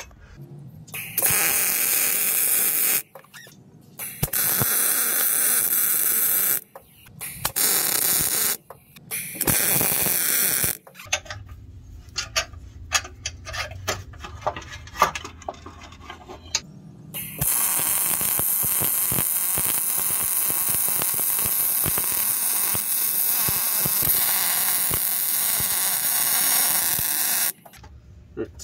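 Miller 252 MIG welder arc running as a steady crackling hiss: four short runs in the first half, then one bead of about ten seconds near the end, with a few seconds of clicks and knocks in between. The wire speed is set a little high, so the bead comes out a little too tall.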